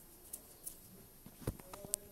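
Metal spoon stirring a liquid gelatin mixture in a pot, giving a few light clinks and scrapes against the pot. The loudest clink comes about one and a half seconds in.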